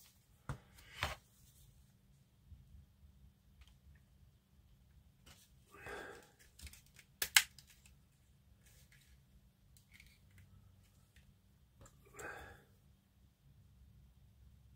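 Plastic model-kit parts handled and pressed together: scattered light clicks and short scrapes of plastic on plastic, with the sharpest click about seven seconds in.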